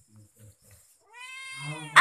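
Domestic cat meowing: one long, drawn-out meow that starts about halfway through and grows louder. The first half is quiet.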